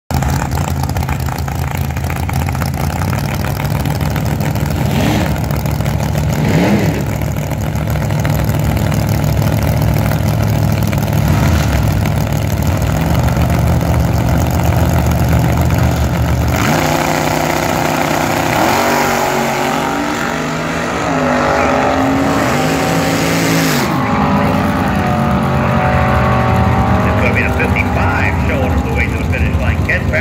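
Drag-racing cars idling on the start line, with two short throttle blips. About halfway through they launch at full throttle: engine pitch climbs and drops back at each of three gear changes, then settles into a steadier drone as the cars run away down the strip.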